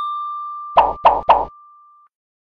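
End-card sound effects: one high chime tone rings on and slowly fades, and three quick pops about a third of a second apart sound near the middle.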